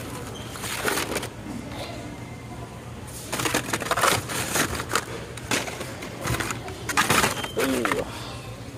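Blister-carded Hot Wheels packages, cardboard backs with plastic bubbles, rustling and clattering against each other as they are picked up and shuffled through by hand in a bin, in several bursts.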